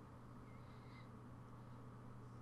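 Near silence: room tone with a steady low hum and a faint, brief high chirp about half a second in.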